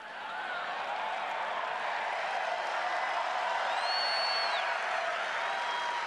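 A large stadium crowd cheering and applauding. The noise swells over the first second and then holds steady, with a high whistle rising and falling around the middle.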